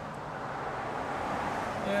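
Road traffic noise, the rushing of a car going by on the street, growing steadily louder.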